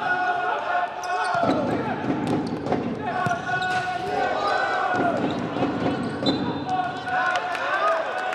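Futsal ball being kicked and bouncing on a wooden indoor court, with players' voices calling out on the court.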